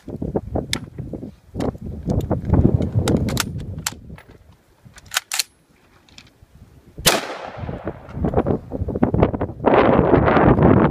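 Several rifle shots from an LWRC M6A2 fired in semi-auto, spaced unevenly with pauses between them. The rifle is failing to cycle reliably after its new barrel and adjustable gas block, a fault the maker's warranty manager took for under-gassing. Rustling handling noise follows near the end.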